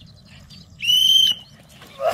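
A single whistle blast about half a second long, a steady high tone that rises briefly at its start, sounded about a second in as the signal for a line of soldiers to jump into the water.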